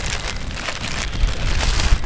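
Wind buffeting the microphone as a heavy low rumble, with a dense crackling rustle over it.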